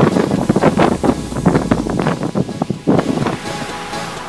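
Wind buffeting the microphone of a moving vehicle on a sand track, in loud irregular gusts. Near the end the gusts ease and music comes in.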